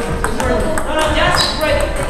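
Table tennis balls clicking off paddles and tables in several rallies at once, with people talking over them.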